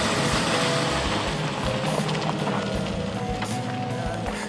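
Music playing over an SUV driving off with a boat trailer in tow, its engine and tyres heard underneath.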